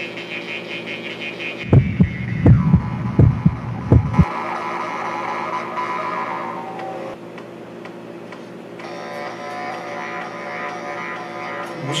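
Folk throat-singing act's buzzing overtone drone, its bright overtones shifting in pitch. A quick run of heavy low thumps about two seconds in. The drone dips near the middle and turns brighter again toward the end.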